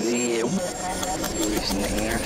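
Psytrance track played in reverse: the heavy bass drops out suddenly at the start, leaving a reversed voice sample and gliding synth effects. The bass starts to swell back near the end.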